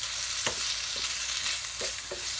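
Sliced all-beef kielbasa and onions sizzling as they brown in two pans: a steady hiss. The kielbasa is stirred with a wooden spatula, which knocks lightly against the skillet a couple of times.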